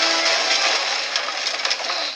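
Crashing and splintering of wood and debris as a bar is smashed, a dense continuous clatter with music underneath, from the TV episode's soundtrack.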